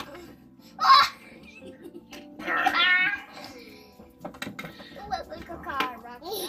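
Young children's voices, high-pitched babbling and vocalizing in two stretches, with a short loud burst of noise about a second in.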